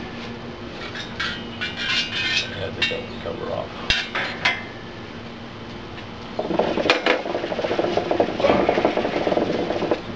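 Metal hookah parts clinking and rattling as they are handled, a few sharp clinks in the first half. Then, from about six seconds in, the water in the hookah base bubbling rapidly as someone draws a drag through the hose.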